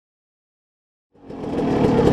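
Silence, then about halfway through a dirt bike engine comes in and quickly grows louder, running with a rough, pitched note.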